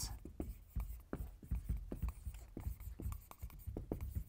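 Marker pen writing on a whiteboard: a quick, irregular run of short strokes as letters are drawn.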